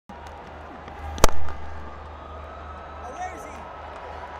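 A cricket bat striking the ball once with a sharp crack about a second in, a straight drive, over a steady hum of stadium crowd noise.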